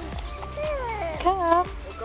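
A toddler's high-pitched babbling with a wavering squeal about one and a half seconds in, over background music with a steady beat.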